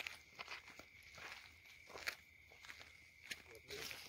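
Soft, irregular footsteps scuffing and crunching on dry, stony ground, over a faint steady high-pitched hum.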